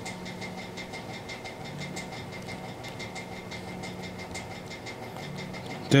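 Steady low electrical hum with a thin high whine over it, and faint small ticks at fairly even intervals as a small screwdriver works a tiny screw out of a Honda key fob.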